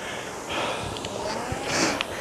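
Concept2 RowErg air-resistance rowing machine in use at an easy, low-intensity stroke rate. Its fan flywheel whooshes, swelling twice, most strongly near the end as a drive is taken, with a faint knock about one and a half seconds in.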